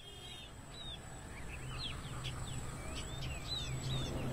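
Birds chirping: a run of short, quick, high calls over a low steady hum, the whole fading in gradually.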